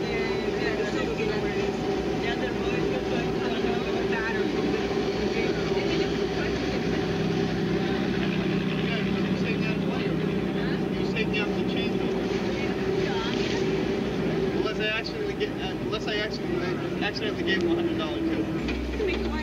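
Boat engine running steadily, a continuous drone with a held tone, with indistinct voices talking over it.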